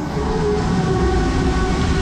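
Wind rushing over the microphone and the steady rumble of a fairground aeroplane ride spinning at speed, with a faint low hum held underneath.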